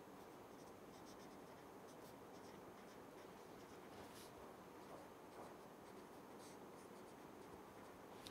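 Faint scratching of a felt-tip marker writing on paper, in short strokes, over a low steady room hiss.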